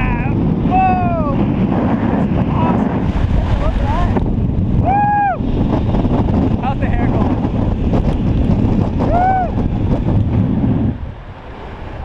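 Heavy wind noise rushing over the camera microphone during a fast cable-controlled fall from a tower, with a man's rising-and-falling whooping yells about one, five and nine seconds in. The wind cuts off sharply near the end as the descent stops at the landing.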